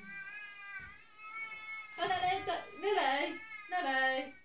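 Baby-voice sounds from an electronic Jack-Jack doll: a long, softly wavering whine, then louder cries that bend up and down in pitch about two seconds in and again near the end.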